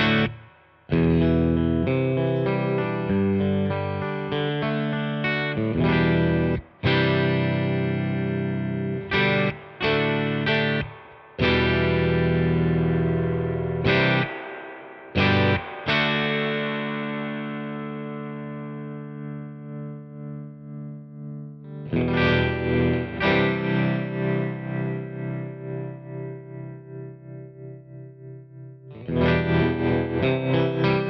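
Electric guitar played through a Supro Black Magick Reverb valve combo amp: struck chords, several choked off short. In the second half the held chords pulse evenly in volume, the amp's tremolo at work.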